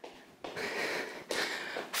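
A woman breathing hard from exertion during a cardio exercise: two audible breaths, one after the other.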